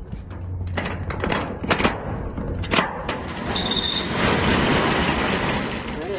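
Clicks and clanks of a padlock and latch being worked on a metal roll-up storage-unit door. Then, from about halfway through, the corrugated steel door rattles steadily as it is rolled up.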